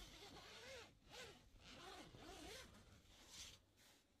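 Zipper on a camper's fabric window cover being pulled open in several quick strokes, a soft rasp whose pitch rises and falls with the speed of each pull.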